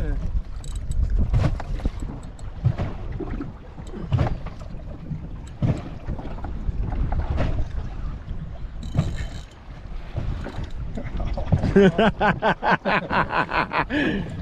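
Wind buffeting the microphone over a small aluminium boat rocking in a chop, with irregular knocks and slaps on the hull. A man laughs near the end.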